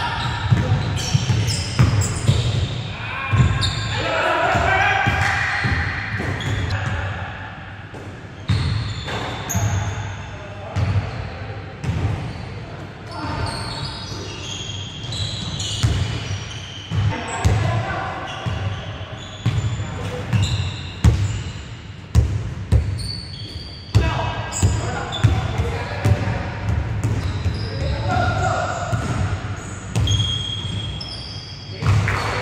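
Basketball game on an indoor hardwood court: a ball bouncing again and again at an irregular pace, with players' indistinct shouts and calls, all echoing in a large gym hall.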